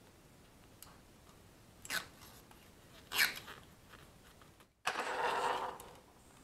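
Utility knife blade cutting through a thick rubber speargun band, in a few short scraping strokes, then a longer scrape just before the end.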